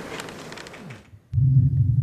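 Faint room noise, then about a second and a half in a man's low closed-mouth 'mm' close to a microphone, held briefly as he starts to reply.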